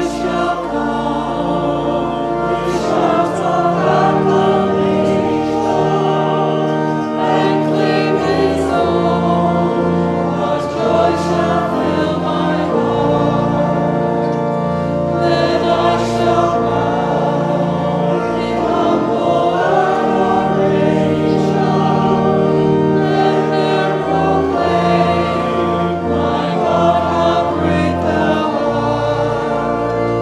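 A church congregation singing a hymn to organ accompaniment, sung lines over held organ bass notes.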